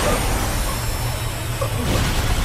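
A steady low rumble under a hiss, with faint thin high tones above it.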